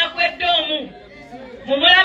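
Speech only: a woman speaking loudly into press microphones, pausing briefly about a second in before going on.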